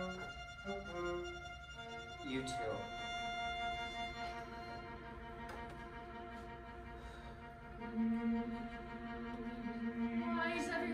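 Chamber ensemble of bowed strings, violins among them, playing long held notes, with a quick upward slide a couple of seconds in and a low sustained note entering near the end.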